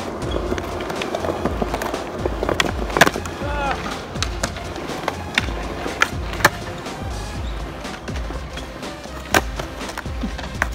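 Skateboard wheels rolling on concrete with a steady low rumble, broken by sharp clacks of the board striking the ground. The strongest clacks come about three seconds in, again past six seconds, and near the end.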